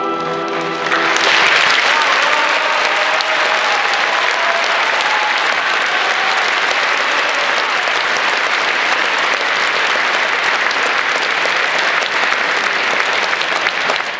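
An orchestra's final held chord dies away about a second in, and a concert-hall audience breaks into applause that carries on steadily to the end.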